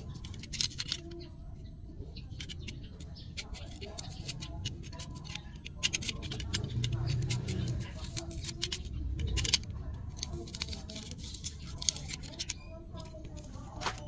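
Close, irregular clicks and scraping of a small snap-off utility knife cutting into a red onion, with hand-handling noise, over faint voices.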